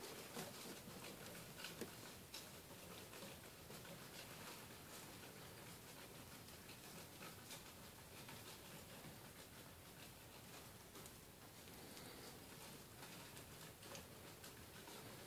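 Near silence, with faint scattered ticks and rustles from hoglets moving about on wood-shavings bedding.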